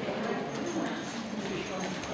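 Many people talking at once in a large hall, with light footsteps on a mat.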